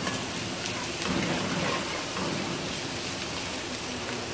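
Diced onions sizzling steadily in hot oil in a metal karahi, a continuous crackling hiss with faint ticks, at the stage where they are cooked only to pink and not browned.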